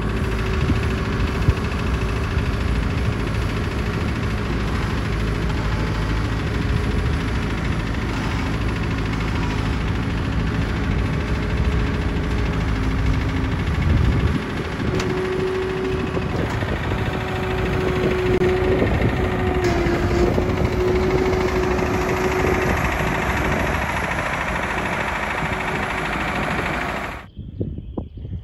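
Case 70XT skid steer loader's diesel engine running steadily under load while it handles a lumber stack. A little past halfway the sound changes and a steady whine rides over the engine for several seconds.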